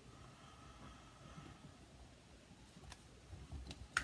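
Mostly faint room tone, then a few light clicks near the end and a sharper click just before it ends: a Stamparatus stamping platform's hinged plate being handled and lifted open after stamping.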